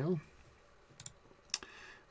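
Two short computer mouse clicks about half a second apart, the first about a second in, over quiet room tone.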